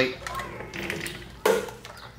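A single short tap about one and a half seconds in: the metal visor-style headlight trim ring knocking against the chrome headlight as it is pressed into place. Faint glove and handling rustle around it.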